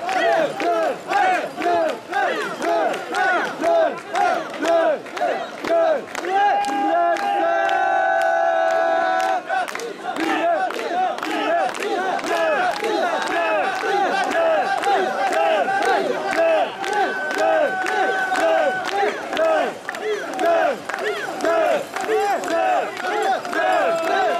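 A crowd of mikoshi bearers chanting a rhythmic carrying call together in short, fast, evenly repeated shouts as they shoulder the portable shrine. A longer held note rises over the chant about a third of the way through.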